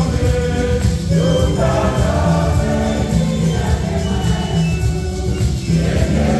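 A church congregation singing a Swahili gospel hymn together, with a strong, steady bass accompaniment underneath.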